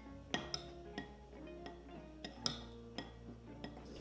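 Quiet background music with plucked, guitar-like notes, over a few light clinks of a metal spoon against a ceramic bowl as sauce is stirred.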